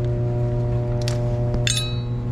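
Small metal parts clink once with a brief metallic ring near the end, after a short rustle, over a loud steady machine hum.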